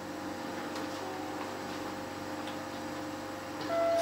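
Quiet guitar background music: soft, sustained notes with a few faint plucked notes.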